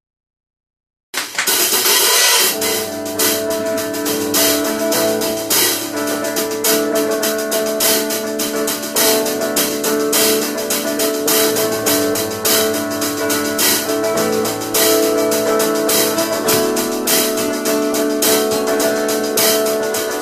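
Live band playing an instrumental intro: drum kit with cymbals and hi-hat under electric and acoustic guitars. The music starts suddenly about a second in, after silence.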